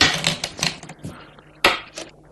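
A run of sharp clacks of Go stones being set down and slid on a Go board. The loudest comes at the start, with another about a second and a half in.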